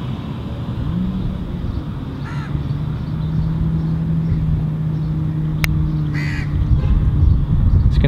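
Outdoor city ambience: a steady low rumble with a held hum. Two short bird calls cut through it, about two seconds in and again about six seconds in, with a single sharp click between them.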